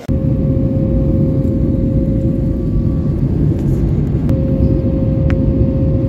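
Jet airliner cabin noise in flight: a loud, steady roar of engines and airflow with a steady mid-pitched engine tone, which fades in the middle and comes back. It starts abruptly.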